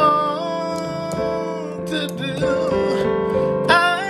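A man singing a worship song in long held notes over instrumental accompaniment, his voice sliding up near the end.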